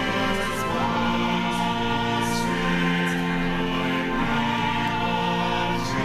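Church choir singing with pipe organ accompaniment, in long held chords that change a few times.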